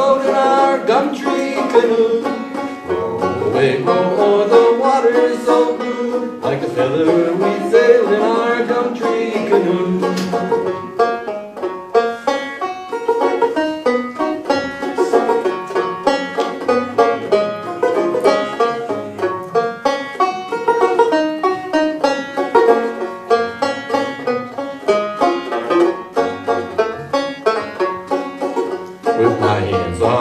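Banjo picked through an instrumental break in a folk song: a quick, even run of plucked notes.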